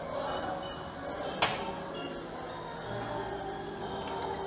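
Grand piano playing quiet held chords as opera accompaniment. A single sharp knock sounds about a second and a half in.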